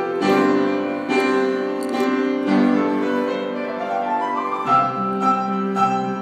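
Solo piano playing a slow piece: notes and chords struck and left ringing, with a rising run of notes about four seconds in.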